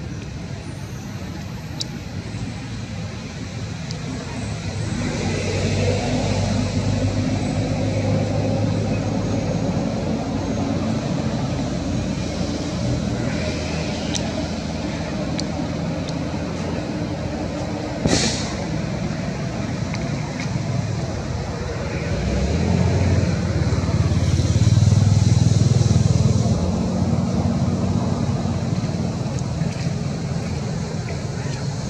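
Road traffic passing: a steady low engine rumble that swells about a fifth of the way in and again, louder, toward the end, with a single sharp click a little past the middle.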